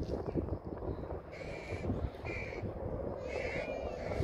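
A bird calling three times, short calls about a second apart, over the steady rumble of wind on the microphone.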